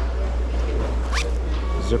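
Zipper on a quilted-fabric Vera Bradley cinch bag being run back and forth in a test, two quick zips about half a second apart, the first rising in pitch. The zipper works.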